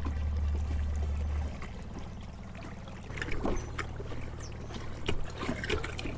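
Water trickling and lapping against a kayak's hull as it moves along a creek, with small splashes and ticks. A low steady hum runs underneath and drops away about a second and a half in.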